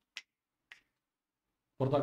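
Two short, sharp clicks about half a second apart, then a man starts speaking near the end.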